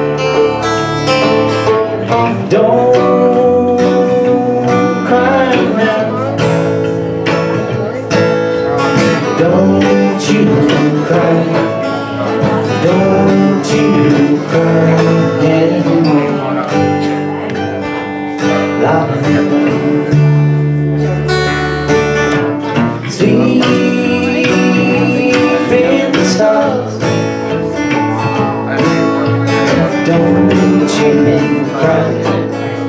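Live acoustic string band playing an instrumental passage in a bluegrass/country style: strummed acoustic guitar and plucked upright bass under a bending lead melody line.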